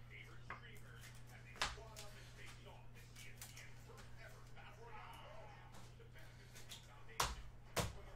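Quiet room with a steady low electrical hum and faint background voices, broken by a few sharp taps or knocks: one about a second and a half in and two close together near the end.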